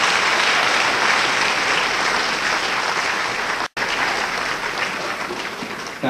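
Audience applauding steadily, broken by a split-second dropout a little past halfway, and tailing off slightly near the end.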